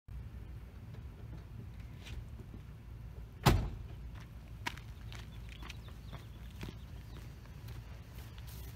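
A GMC pickup truck's door shut once with a loud slam about three and a half seconds in, over a steady low outdoor rumble, followed by a few faint clicks.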